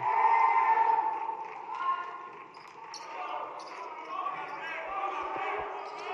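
Basketball game in a gym: the crowd and players' voices rise briefly and then die down, and near the end a basketball is dribbled a few times on the hardwood court.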